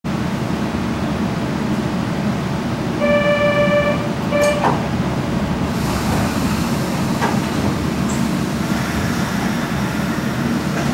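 Steady low rumble inside an old Kobe Electric Railway 1100 series electric train car. About three seconds in, the train's horn sounds for about a second, then again briefly, followed by a sharp click.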